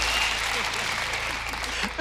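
Studio audience applauding, the clapping slowly dying down.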